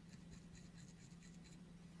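Faint, quick scratching of a stiff-bristled brush scrubbing dried salt off the painted body of a small diecast model car, in short strokes several a second, over a low steady hum.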